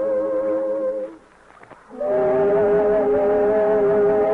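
A chorus of workers humming a slow tune in held notes, breaking off briefly about a second in and coming back in two seconds in on a new chord of two voices in harmony.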